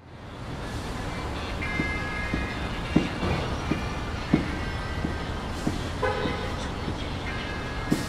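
City ambience fading in at once to a steady low rumble of traffic, with scattered soft knocks and thin high squealing tones coming and going.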